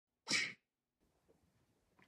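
A single short, sharp vocal burst from a person about a quarter-second in, lasting about a third of a second.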